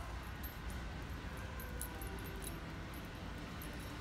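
Quiet background of a large store: a steady low hum with faint, irregular light ticks.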